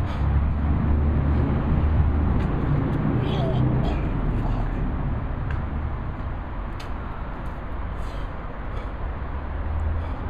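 A man gagging and retching as he doubles over to vomit, the vocal strain heaviest in the first four seconds, over a steady low rumble.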